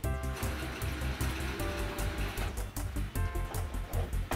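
Instrumental break in a children's song, with a steady bass beat.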